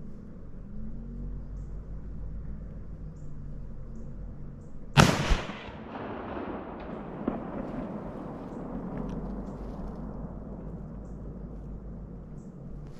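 A muzzleloader rifle fires a single shot about five seconds in, followed a moment later by a second sharp crack. A long rolling echo then fades over several seconds.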